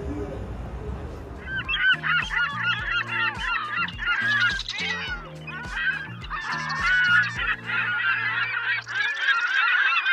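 A dense chorus of honking, goose-like calls laid over an end-screen track with a steady bass beat about two a second. The beat stops near the end while the honking carries on. It is preceded by about a second and a half of low harbour rumble before the cut.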